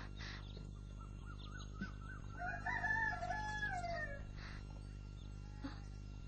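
One long bird call, wavering and rising before it falls away near the end, over a low steady hum.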